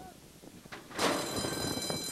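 A racetrack starting-gate bell rings for about a second as the gate doors spring open and the horses break. It starts suddenly about a second in.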